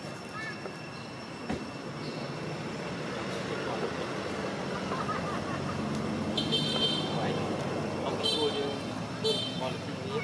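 Steady outdoor background of traffic hum and distant voices, growing a little louder, with three short high toots in the second half.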